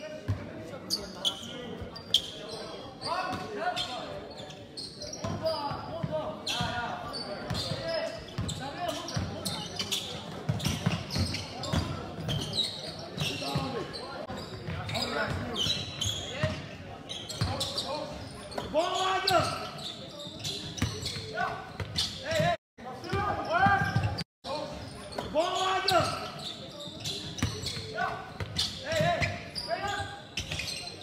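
Basketball game in a large sports hall: a ball bouncing on the hall floor with many short knocks, amid players' and spectators' shouts.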